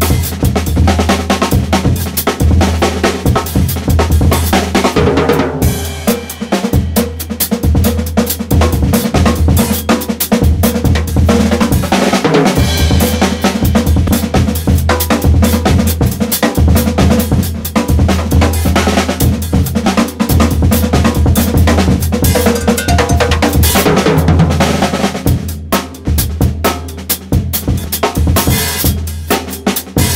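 Acoustic drum kit playing a fast, busy breakbeat groove, bass drum, snare and cymbals in dense continuous strokes. The playing eases briefly about 25 seconds in, then picks up again.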